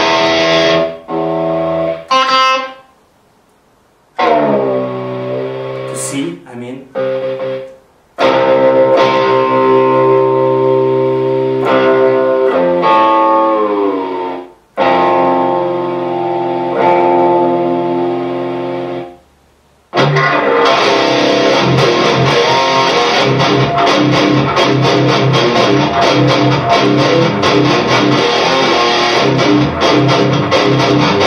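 Distorted electric guitar, a Gibson Les Paul played through Amplitube 2 amp simulation with an overdrive pedal: ringing chords with pitch sliding as a string is retuned down to D, then, from about two-thirds of the way in, a fast, dense distorted riff.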